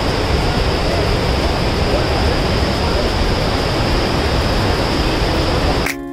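Steady rushing roar of the Pykara Falls cascades, with faint voices beneath it; it cuts off suddenly near the end.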